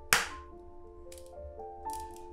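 An egg knocked sharply once against the rim of a glass bowl just after the start, followed by a couple of fainter shell clicks as it is opened, over soft instrumental background music.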